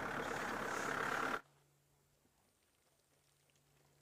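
Safari vehicle driving, a steady rush of engine, road and wind noise that cuts off abruptly about a second and a half in. After that there is near silence with only a faint, steady low hum.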